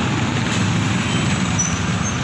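Street traffic: a motor vehicle running close by, a steady low rumble with no break.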